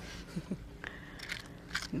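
Faint handling noise: light crackles and a few small clicks as materials are worked by hand at the canvas.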